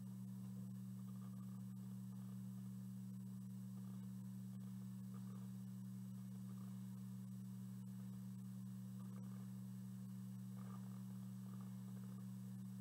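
Quiet room tone with a steady low hum made of two even tones that do not change. The burning cyclohexene flame makes no clear sound of its own.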